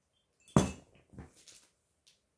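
A sharp knock with a brief ring about half a second in, followed by two fainter knocks.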